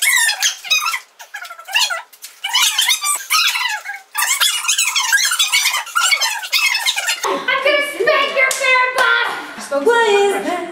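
Several young women chattering and laughing over each other in high, squeaky voices with no low end; about seven seconds in, normal-pitched talking takes over.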